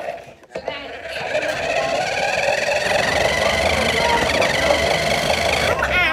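Remote-control toy truck's small electric motor and gears whining as it drives. The sound builds over the first couple of seconds, holds steady, then cuts off suddenly near the end.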